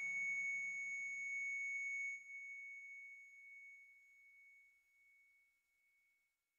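A single steady, high electronic tone, the flatline of a hospital patient monitor, held level for about two seconds, then dropping and slowly fading out.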